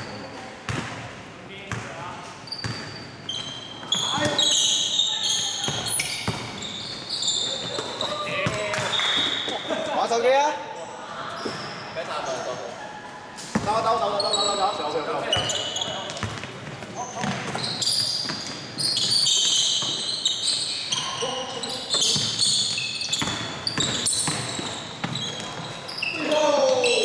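Basketball bouncing on a hardwood gym floor during a scrimmage, with repeated short high squeaks from sneakers and players' voices calling out across the court.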